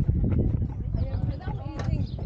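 People talking nearby, with sharp knocks of footsteps on a wooden boardwalk over a low rumble.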